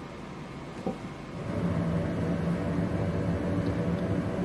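A low, steady mechanical hum that grows louder about a second and a half in, with a faint knock just before.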